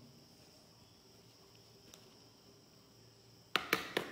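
Quiet room tone with a faint, steady high-pitched tone, broken near the end by two or three sharp clicks.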